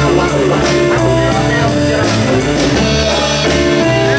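Live rock band playing with electric guitars and a drum kit, the cymbals keeping a steady beat of about four strokes a second.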